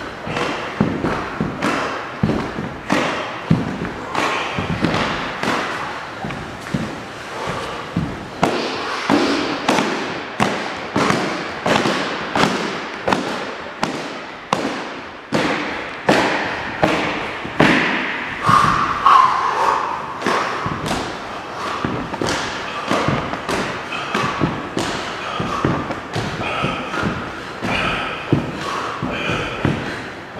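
Mid-level roundhouse kicks (mawashi-geri chudan) thudding into a padded kick shield, one after another in a quick steady run of about one to two strikes a second, mixed with the thuds of V-up sit-ups on a wooden gym floor.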